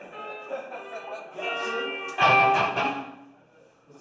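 Electric guitars played through amplifiers on a live stage: a few held notes, then a louder strummed chord about two seconds in that rings and dies away.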